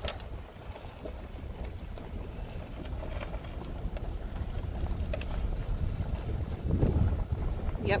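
Wind buffeting the microphone through an open vehicle window, over the low rumble of the vehicle rolling slowly along a rough dirt road. The rumble grows louder near the end.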